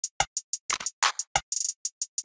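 Programmed drum pattern playing from MPC software: soloed kick, clap, open hi-hat and percussion sounds in a steady beat of short, sharp hits, with a quick burst of rapid hits about a second and a half in.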